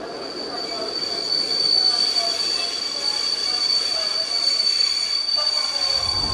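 A steady high-pitched electronic whine, holding one pitch and slowly growing louder.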